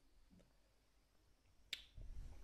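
Near silence, broken by a single short, sharp click near the end.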